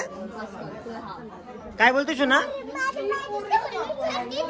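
Voices talking: a young child's high-pitched voice about two seconds in, among other chatter.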